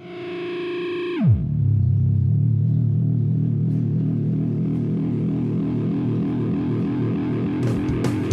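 Soundtrack music: a distorted electric guitar chord that dives sharply down in pitch about a second in, then a low, sustained distorted guitar drone.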